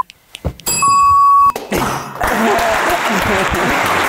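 Game-show sound effect: a single steady electronic tone held for under a second, then cut off sharply. About half a second later, studio applause starts, with voices over it.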